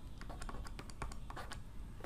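A run of faint, irregular clicks and taps of a stylus on a drawing tablet while handwriting is written.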